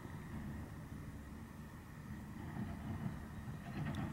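Wind buffeting the microphone outdoors, a fluctuating low rumble, with a few rustles and clicks near the end.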